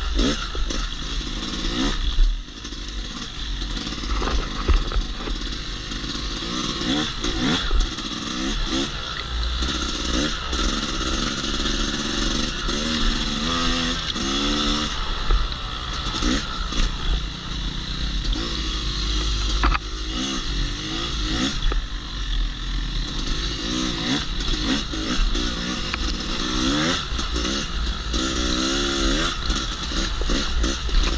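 Yamaha YZ250X two-stroke dirt bike engine being ridden, its pitch rising and falling again and again as the throttle is worked on and off.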